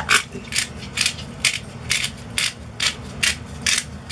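A hand-twisted pepper mill grinding pepper in a steady run of short strokes, about two or three turns a second.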